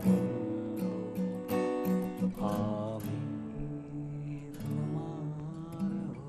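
Acoustic-electric guitar played live, plucked and strummed chords ringing steadily, with a short sung phrase over it a couple of seconds in.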